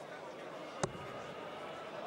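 A dart striking a Unicorn bristle dartboard: one sharp, short impact a little under a second in.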